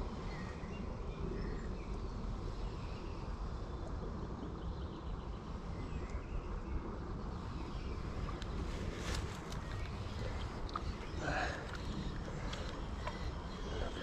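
Steady low rumble of wind on the microphone over outdoor riverside ambience, with a few faint clicks about nine seconds in.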